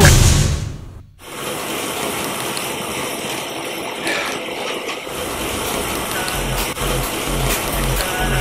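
Soundtrack music: a track winds down in a falling pitch slide and cuts out briefly. A steady rushing noise swell follows, and a pulsing bass beat comes in about six seconds in.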